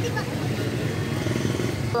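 A vehicle engine running steadily under street noise, with voices in the background.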